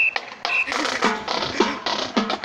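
Marching band drumline playing a cadence: rapid, crisp drum strokes that thicken into a busy pattern about two-thirds of a second in, with a few short high tones about every half second before that.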